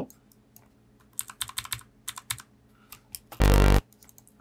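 Mouse and keyboard clicks, then a short, loud, low synth note on G that starts and cuts off abruptly, lasting under half a second, near the end. It is the preview of the note just drawn in the MIDI clip.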